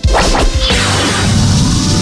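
Whooshing swoosh sound effects over music, starting abruptly with a sharp swish and then a sweeping whoosh.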